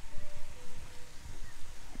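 Outdoor ambience with wind rumbling irregularly on the microphone and a faint high tone or two.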